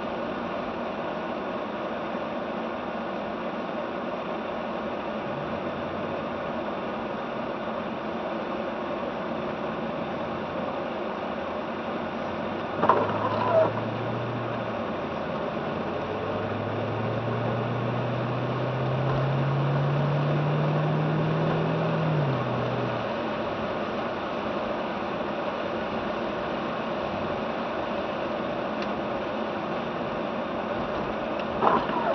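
Car engine and tyre noise heard inside the cabin while driving on a snow-covered road. Two sharp knocks come a little before the middle, then the engine note climbs for several seconds and drops back.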